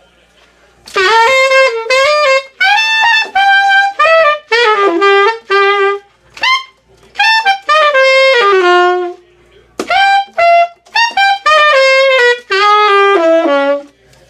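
Tenor saxophone playing quick patterned runs of short notes in its upper register, in four phrases separated by brief breaths. The notes are produced with dedicated overtone fingerings.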